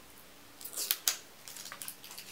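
Short sharp clicks and scrapes of a small liquid lipstick tube being handled in the fingers, bunched together from about half a second to a second in, then a few fainter ticks near the end.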